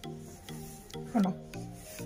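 Rubbing and rustling of beaded dress fabric being handled, over soft background music, with a short vocal sound about a second in.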